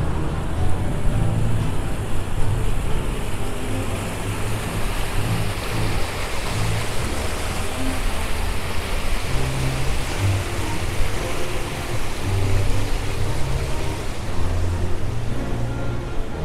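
Water rushing down a stepped cascade fountain, a steady hiss that grows louder in the middle, over music with a repeating bass line.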